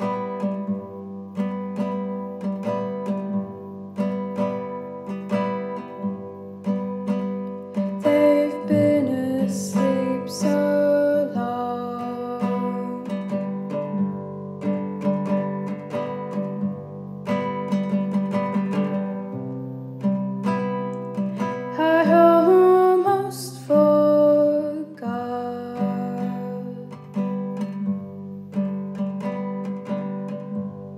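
Acoustic guitar playing an instrumental passage of a song, notes picked in a steady, even rhythm.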